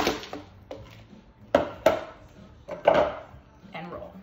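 Food processor's plastic work bowl and a utensil knocking against a mixing bowl as the ground oat mixture is tipped and scraped out: about five sharp knocks, a second or so apart, with quieter rustling between.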